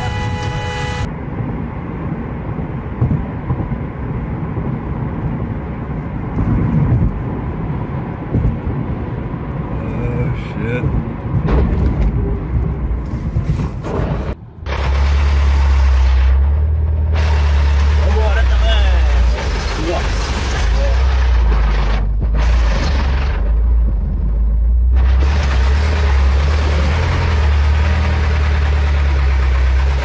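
Vehicle engine running with a steady low drone through the second half, on a rough dirt road. Before that, a noisy rumble with a few sharp knocks.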